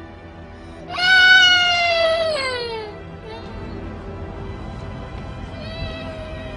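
A toddler crying: one long, high wail starting about a second in, held for over a second and then falling in pitch as it fades, with a second, shorter cry starting near the end. Steady background music plays underneath.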